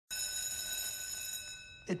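School bell sounding as one high, steady electronic tone that starts abruptly and fades away over nearly two seconds.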